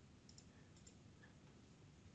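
Near silence, with a few faint computer-mouse clicks.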